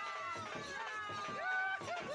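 A voice calling out in long drawn-out notes, with bending pitch and held tones, over the open-air noise of a large crowd.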